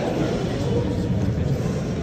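Steady low background din of a large indoor training hall, with no distinct impacts.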